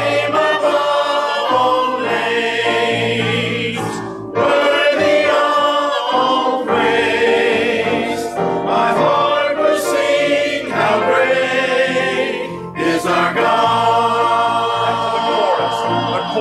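Mixed church choir of men and women singing a hymn in long held phrases, with short breaths between phrases about four seconds in and again near thirteen seconds.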